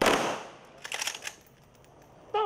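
Volley of rifle fire from a line of soldiers firing a gun salute into the air: one sharp, simultaneous blast that dies away over about half a second, with a few fainter short sounds about a second later.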